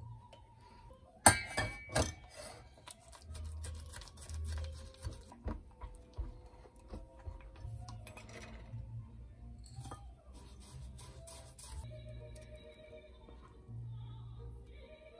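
Kitchenware clinking over quiet background music: two sharp clinks about a second in are the loudest sounds, followed by scattered light clicks and scrapes of a wooden utensil stirring egg yolks in a glass measuring cup.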